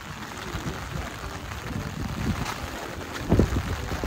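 Light rain falling outdoors, with wind buffeting the microphone in uneven low rumbles and one louder low thump a little past three seconds in.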